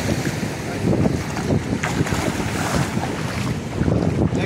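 Wind buffeting the microphone in a loud, uneven low rumble, over the steady wash of sea surf on rocks.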